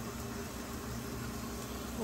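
Steady low hum of a running fan, with no sudden sounds.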